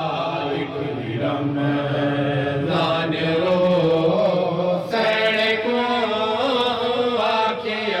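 A noha, a Shia mourning lament, chanted by a male reciter in long held, wavering lines.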